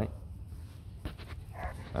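A H'Mong bobtail puppy gives a brief faint whimper near the end, and a few soft clicks come about a second in.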